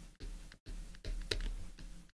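Pen stylus tapping and scratching on a tablet screen in a run of short ticks while handwriting, over a low hum.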